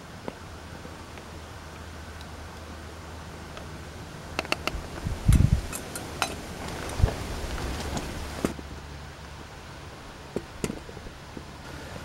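Light metallic clicks and knocks as a pot gripper and knife work at a stainless steel pot and its lid on a small alcohol stove, with one heavier thump about five seconds in, over a steady low hum.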